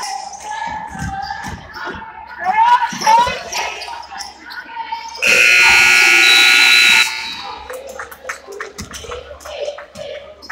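Gym scoreboard buzzer sounding one steady blast of about two seconds, starting about five seconds in, signalling the end of the first half. Voices shouting and a basketball bouncing on the hardwood floor around it.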